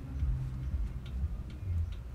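Light handling of a paper comic book: faint scattered clicks and a low rumble as hands rest on and shift across its open pages.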